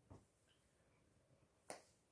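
Near silence with one short, sharp click near the end.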